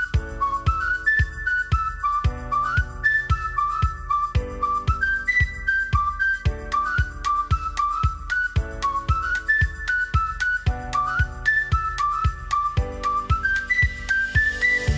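Upbeat background music: a whistled tune over a steady clapping beat, with piano and ukulele chords.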